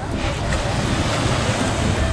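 Wind buffeting the microphone in an uneven low rumble over a steady wash of sea surf.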